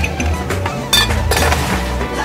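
Background music with a steady bass beat. About a second in, a sharp clink as ice cubes are tipped from a metal tin into a ceramic cup.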